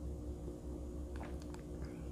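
Quiet room with a steady low hum, and a few faint mouth clicks from a person sipping hot tea from a cup about a second in.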